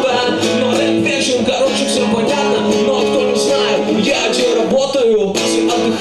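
A man singing a song to a strummed acoustic guitar, with an even strumming rhythm.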